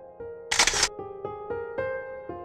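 A single camera shutter release, a short sharp click-and-clatter, about half a second in. It sits over gentle background piano music of slow single notes.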